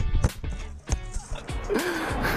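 Knocks and rustling from a GoPro camera tumbling over the grass after being struck by the ball, picked up by the camera's own microphone, over background music.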